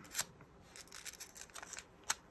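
Thin Bible pages rustling under the hands as they are turned and smoothed flat: a few short, soft paper rustles, the clearest just after the start.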